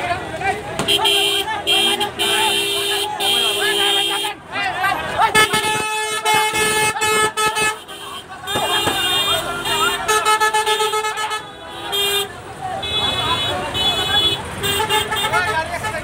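Vehicle horns honking in repeated blasts, some held for a second or more and shorter toots near the end, over a crowd of shouting voices.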